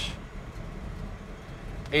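1971 Chevrolet Chevelle SS engine idling at about 800 rpm, a steady low hum heard from inside the cabin.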